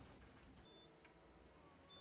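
Near silence: a faint low rumble inside a moving trolleybus cab, with a short high beep about two thirds of a second in and another starting near the end.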